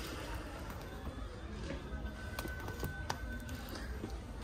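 Quiet background music with a few sharp clicks of spiral-bound sketchbooks being handled on a shop shelf.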